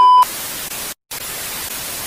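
Television static sound effect: a loud steady test-tone beep that cuts off just after the start, then an even static hiss, broken by a brief silence about a second in.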